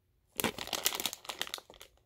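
Clear plastic packaging bag crinkling and crackling as it is handled and opened, a dense run of crackles starting about a third of a second in and stopping just before the end.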